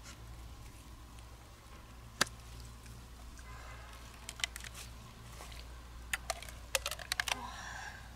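Knife blade clicking and scraping against the shell of a large freshwater mussel as it is pried open: one sharp click about two seconds in, a few scattered clicks, then a quick run of clicks near the end.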